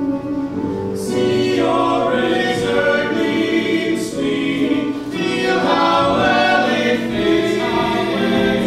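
Several voices singing together in harmony like a choir, holding chords that shift every second or so.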